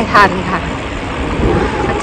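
Wind rushing over the phone's microphone while riding a bicycle: a steady, low, noisy rush after a brief spoken word at the start.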